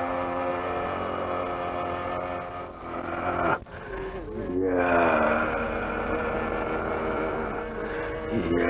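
Carnatic male vocalist singing long held notes that slide between pitches, with a short break about three and a half seconds in before a new phrase begins.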